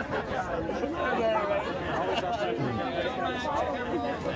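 Several people talking at once at a distance: overlapping conversation in which no single voice stands out.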